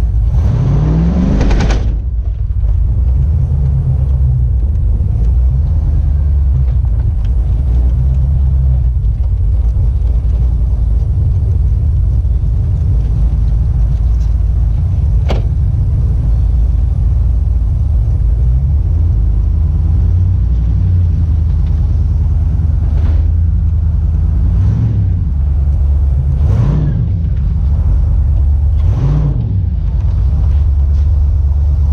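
OBS pickup truck's engine and exhaust heard from inside the cab while driving, a loud, steady low rumble. It revs up in the first two seconds and a few more times near the end. There is a single sharp click about halfway through.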